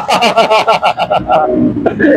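A man laughing hard, a quick run of ha-ha bursts about seven a second that trails off, with one sharp smack near the end.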